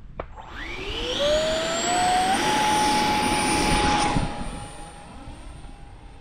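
Electric ducted fan of a 3D-printed RC F-35C jet spooling up with a rising whine, then holding a steady high pitch at full throttle. Just after four seconds in it drops away sharply as the model is launched and flies off, the whine carrying on faintly.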